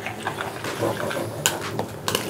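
Metal spoon stirring a wet, oil-dressed chopped tomato and herb salsa in a plastic bowl: scattered clicks and scrapes of the spoon against the bowl over a wet squelch, with one sharper knock about three-quarters of the way in.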